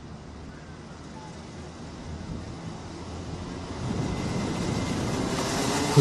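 A pack of Rotax Mini Max two-stroke karts running at a race start, heard from a distance as an even engine haze that swells louder from about halfway through as the field gets away.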